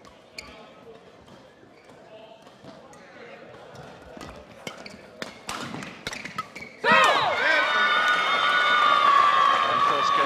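Badminton rally: sharp racket strikes on the shuttlecock and footfalls on the court. About seven seconds in, the crowd suddenly bursts into loud cheering that carries on.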